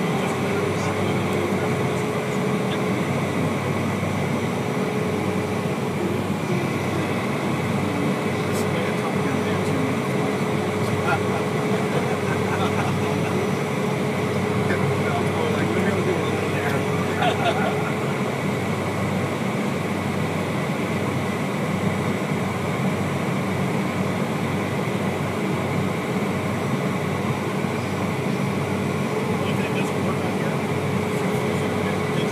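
Cessna Citation's turbofan engines running at taxi power, heard inside the cabin: a steady noise with a constant mid-pitched whine.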